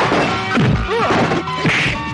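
Film fight sound effects: several dubbed whacks and a smash as a blow lands, with sliding tones over background music.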